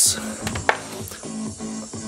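Music playing from two Sonos Play:3 speakers in the room, heard steadily, with a couple of short clicks about half a second in.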